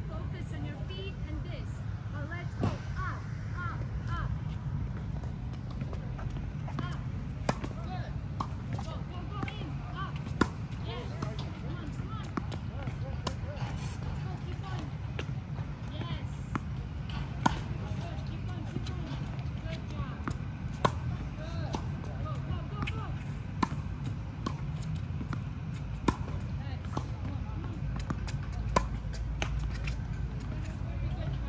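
Tennis balls struck by rackets in a baseline rally: single sharp pops every few seconds over a steady low outdoor rumble.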